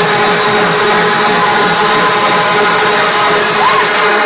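Loud trance music over a club sound system, recorded on a phone as a harsh, distorted wash with held synth notes, over a crowd cheering and whistling.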